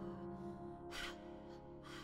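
A held piano chord fading slowly, with a sharp breath drawn in by the singer about a second in.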